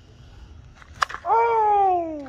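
A slowpitch softball struck by a Suncoast bat: one sharp crack about halfway through, followed at once by a man's long 'whooo' shout of approval that falls in pitch.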